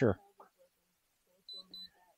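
Two short, high electronic beeps in quick succession from a handheld drone remote controller, after the tail of a man's last word.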